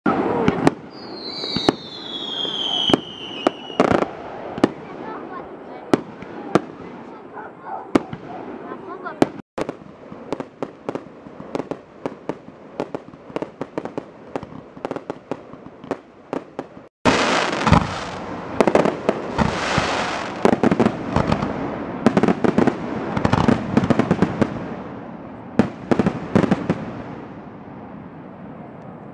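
Fireworks display: aerial shells bursting in a string of sharp bangs, with a falling whistle in the first few seconds. About two-thirds of the way through, a dense barrage of rapid bangs and crackling takes over.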